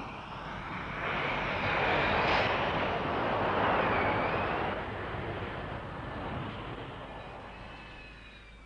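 Jet noise from a Harrier's Rolls-Royce Pegasus engine during a short landing: it swells over the first two seconds, is loudest in the middle with a whine that dips in pitch and recovers about four seconds in, then fades away as the jet rolls out.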